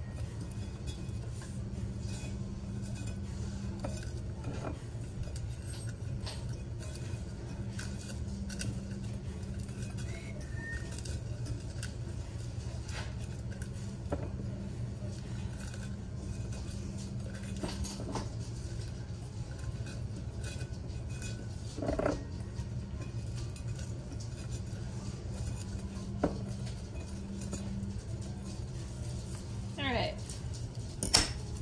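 Razor blade trimming waterslide decal paper along the top rim of a stainless steel tumbler: scattered faint clicks and light clinks of the blade against the metal, over a steady low hum.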